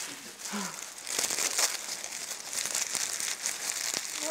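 Paper gift wrapping crinkling and rustling as a small present is unwrapped by hand, with a brief voice about half a second in.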